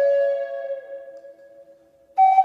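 Background music: one long held note that fades away toward the end.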